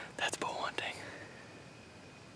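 A man whispering briefly in the first second.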